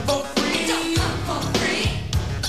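A TV series' opening theme music: an upbeat rock song with drums hitting about twice a second.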